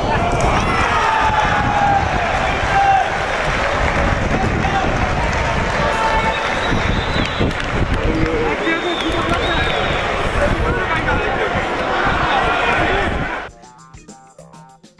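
Footballers shouting and cheering on the pitch after a goal, with heavy wind buffeting the microphone; it cuts off suddenly near the end.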